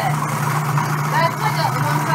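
Food processor motor running steadily as it blends garlic and oil into toum, a low even hum under the voices.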